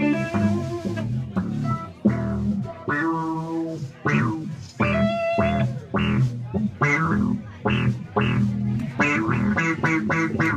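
Live funk-rock fusion band playing: electric bass and electric guitar in short, choppy phrases, with a held guitar note about halfway through.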